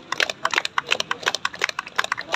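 Scattered hand clapping from several people: quick, uneven claps overlapping one another.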